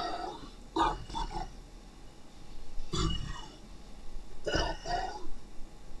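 A person's voice making short non-word vocal sounds in several brief bursts with pauses between them.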